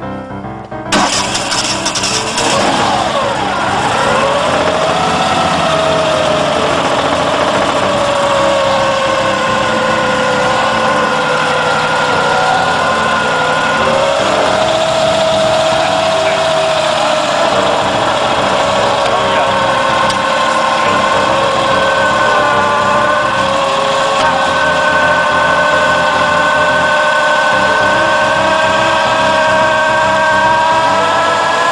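A small vehicle's engine starting about a second in, its pitch swooping for the first few seconds, then running steadily with a slowly wavering pitch.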